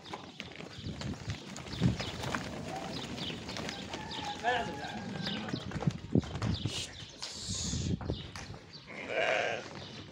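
Sardi sheep moving about on dirt: scattered short scuffs and knocks, with a couple of brief bleats about four and nine seconds in.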